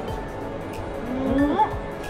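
Background music, with a person's drawn-out 'mmm' hum of enjoyment while chewing from about a second in, gliding up and down in pitch.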